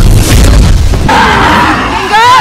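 Cinematic action sound effects: a heavy booming rumble, then a harsh, noisy blast about a second in, over orchestral score.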